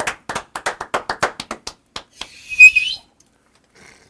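A quick run of hand claps for just under two seconds, then, a little over two seconds in, a short, loud, high-pitched hiss.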